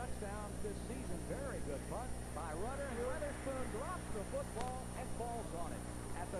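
A person's voice talking, with no clear words, over a steady low electrical hum.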